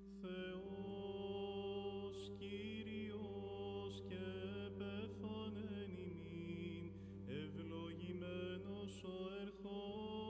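Byzantine chant: a voice singing a slow, ornamented melody over a steady held drone (the ison).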